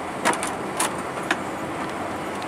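Steady airliner cabin noise inside an Airbus A320 being pushed back from the gate, with three sharp clicks about half a second apart, the first the loudest.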